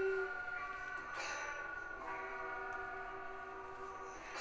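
Quiet instrumental backing of sustained chords between sung phrases, changing about a second in and again about two seconds in; a woman's held sung note ends just after the start.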